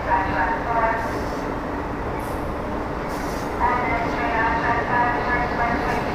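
Amtrak Acela Express trainset rolling past on the near track, a steady rumble of wheels and running gear.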